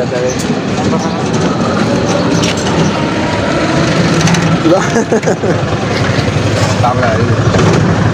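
Street traffic noise: a steady low engine hum under people talking close by.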